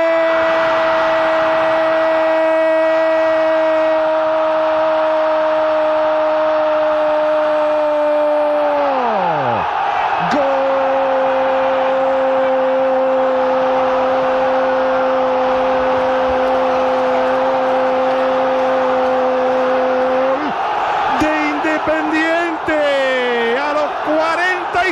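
Football commentator's drawn-out "¡Goooool!" shout, calling a goal: one note held steady for about ten seconds that falls away, then after a breath a second long held cry at a lower pitch for about ten seconds more. A steady noise of the stadium crowd sits beneath it, and shouted words come in near the end.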